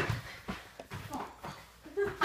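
A sharp knock, then a few lighter thumps about half a second apart, from a small ball and players' feet on a hard floor during a mini-hoop game, with faint breathy voice sounds between them.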